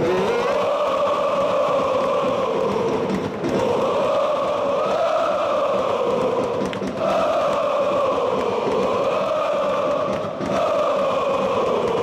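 A large crowd of football supporters chanting in unison, arms raised. One sung phrase that rises and falls, repeated about every three and a half seconds with a brief breath between repeats.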